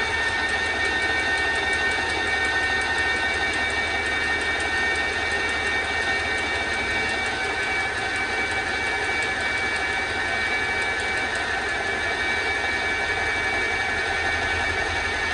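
Graco 390 PC airless paint sprayer's electric motor and piston pump running steadily with a constant whine, priming at a low pressure setting: drawing primer up the siphon tube and returning it through the prime tube into the bucket.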